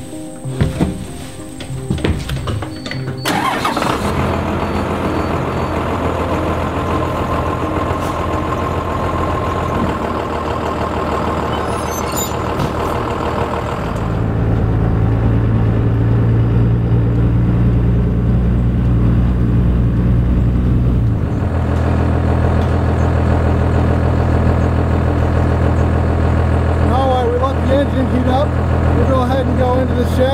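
A Cummins 5.9 diesel engine in a 1992 Blue Bird school bus is started cold on diesel fuel, catching about three seconds in. It then idles steadily while it warms up. From about halfway it is heard from outside the bus, louder and deeper.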